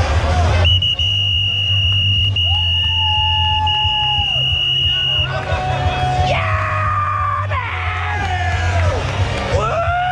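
Loud bar music with a heavy bass line. A long high-pitched held note runs through the first half, then a crowd of patrons yells and whoops with wavering raised voices.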